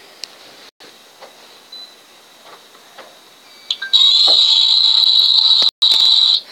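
A loud, shrill, steady high-pitched sound lasting about two and a half seconds, starting about four seconds in; before it there are only a few faint clicks.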